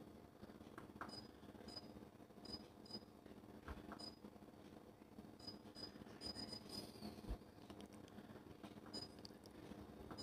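Near silence: room tone with a faint steady hum, a scatter of faint short high-pitched pips and a few soft clicks.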